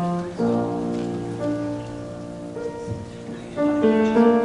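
Slow, soft piano music: sustained chords that change about once a second, quieter in the second half.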